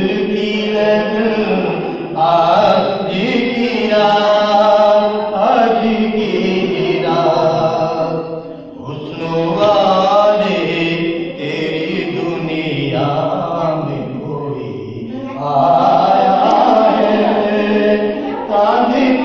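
A man singing a Hindi song into a handheld microphone through a loudspeaker, long melodic lines with brief breaks, over a steady low drone.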